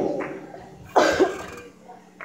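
A single cough, starting suddenly about a second in and dying away over half a second.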